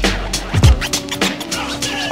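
Instrumental hip hop beat: deep kick drums and sharp hits over a held sampled chord, with turntable scratching cut in over it.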